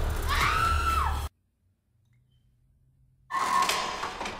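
Horror film soundtrack: loud banging under a dramatic music sting, with a shrill rising-and-falling cry, all cutting off abruptly about a second in. After a couple of seconds of near silence comes a sudden loud impact of something dropping, which dies away.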